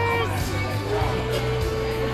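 Electronic pull-tab game's music and win sound as a $5 win comes up: a chord fades out, then a single held electronic tone sounds over a steady low hum.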